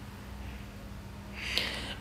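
Quiet room tone with a faint steady low hum, and a breath drawn in near the end.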